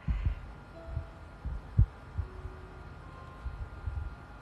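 Low, soft thumps at irregular intervals, the sharpest a little under two seconds in, over a faint steady hum.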